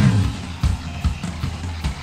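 Japanese rock band recording with an electric bass played along. A loud full-band hit rings out and fades at the start, then drum beats and a low bass line carry on more quietly.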